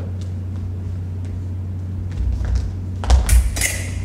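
Fencers' footwork on a wooden gym floor: a few light steps, then low thuds of feet stamping from about two seconds in. Just after three seconds a quick attack brings a cluster of sharp foot stamps and blades clashing, the loudest sounds here.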